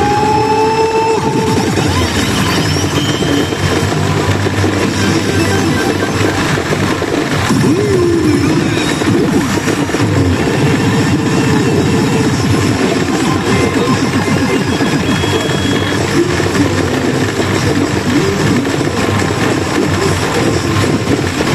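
Yajikita pachinko machine playing its loud, busy rush-mode music and sound effects while paying out during a rush, over the general din of a pachinko parlor.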